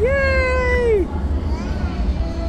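A toddler's voice: one long held call of about a second, steady in pitch and then dropping off, followed by a shorter, softer call.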